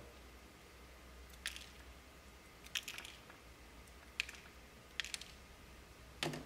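Small wire cutters snipping the copper conductors of a Cat 5e UTP cable: several short, sharp snips, about a second apart, as the wire ends are trimmed even to about a centimetre.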